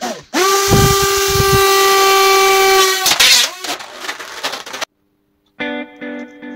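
A loud, steady horn-like tone with overtones holds for about three seconds, then breaks into a noisy burst that fades out. Guitar music starts near the end.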